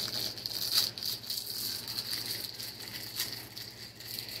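Clear plastic snack-cake wrapper crinkling and crackling in irregular bursts as it is worked open by hand.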